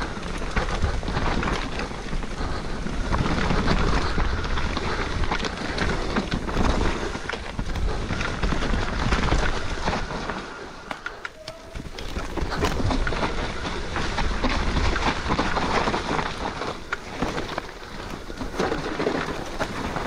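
Mountain bike riding down a slippery, muddy trail: a steady rough noise of tyres, chain and frame rattle, with many small knocks as it goes over the ground. It eases briefly a little past halfway.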